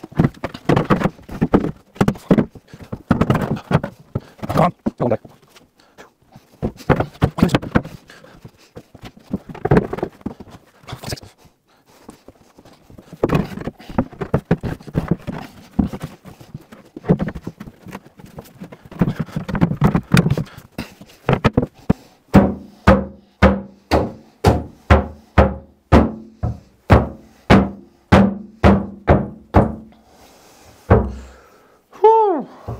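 A marine-plywood sole board knocks and scrapes against the wooden frame of a boat's hull as it is forced into place. Near the end come a steady run of heavy thumps, about two a second, each with a short low ring, as the board is stamped down into its seat.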